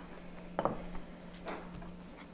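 Quiet table-top handling: a few faint taps and knocks as playdough is worked and a wooden rolling pin is put down on the table, over a low steady hum.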